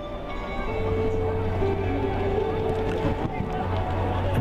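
Background music with long held notes over a steady low bass, against the general noise of the arena.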